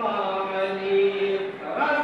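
A man's voice chanting in long, held melodic notes, with a new phrase beginning near the end.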